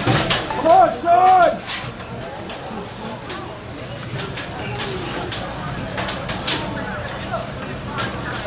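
Two loud shouted calls about a second in, then fainter distant shouting and chatter with a few sharp clicks scattered through.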